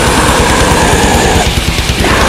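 Death metal: heavily distorted electric guitars over rapid, relentless kick-drum strokes, loud and dense.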